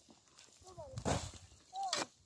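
A metal shovel blade scraping into dry, stony soil once, about a second in, with a few brief high-pitched vocal calls before and after it.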